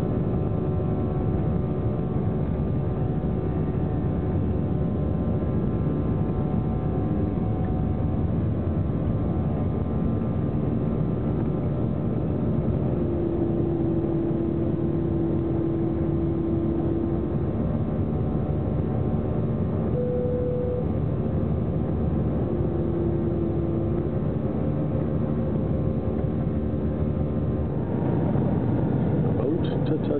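Jet airliner cabin noise from a seat over the wing: the engines running steadily with a constant hum. About two seconds before the end the noise changes and grows slightly louder.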